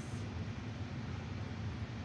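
Steady low hum with an even hiss: background room noise.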